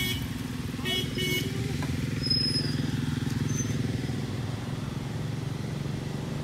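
An engine idling steadily, a low even hum that does not change, with a brief high call or voice about a second in.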